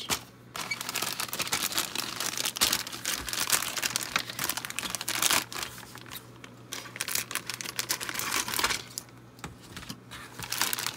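Clear plastic bag holding plastic model kit sprues being picked up and handled, crinkling and rustling almost continuously and easing off near the end.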